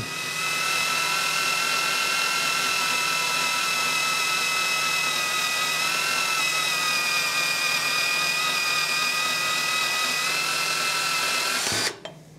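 A handheld power tool cutting through steel square tube. It gives a steady whine that sags a little in pitch about halfway through under the load, then cuts off near the end as the cut finishes.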